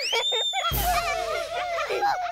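Short cartoon-style musical sting: a rising swoop at the start, a crash about two-thirds of a second in, then quick squeaky warbling notes over a held tone.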